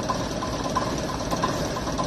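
Leyland OPD2/1 double-decker bus's six-cylinder Leyland O.600 diesel engine idling steadily, with a regular diesel knock ticking about three times a second.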